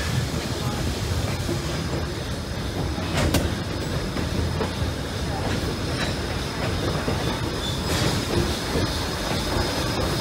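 A train pushed by a Heisler geared steam locomotive rolling along the track, heard from an open-air car: a steady rumble of wheels and cars on the rails, with a sharp click about three seconds in and another near eight seconds.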